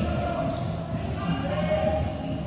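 Live basketball game sound in a large, echoing hall: a ball bouncing on the hardwood court over the steady background of the arena.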